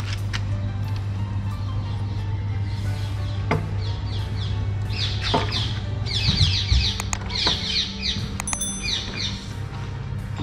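Small birds chirping in rapid series of short descending notes, building up a few seconds in and loudest in the second half, over a steady low hum.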